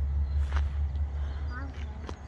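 A steady low rumble outdoors, with a faint short voice about one and a half seconds in and a light click about halfway through.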